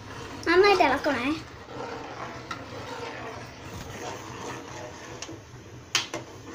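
A high-pitched voice says a short, drawn-out word about half a second in. After that comes quiet stirring of a liquid in a steel pot with a metal spoon, with a few light clicks.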